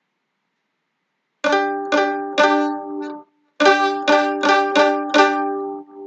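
Mandolin playing a G-and-D double stop, the two notes sounding together as a harmony. It starts about a second and a half in with three strikes, pauses briefly, then comes about six quicker strikes that ring and fade.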